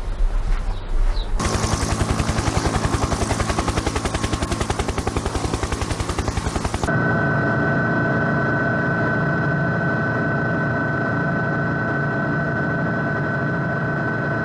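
Helicopter running, with a fast, even beat of the rotor, then a steady whine with a high tone from about seven seconds in.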